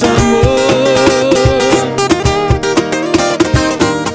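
Acoustic sertanejo-style music: two acoustic guitars picking and strumming over a cajón beat. A long wavering melody note is held through about the first two seconds.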